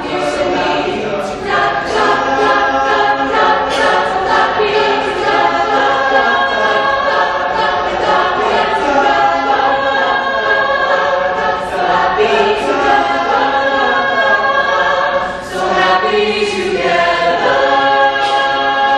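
A school choir singing in harmony, with long held chords and a brief dip in loudness about fifteen seconds in.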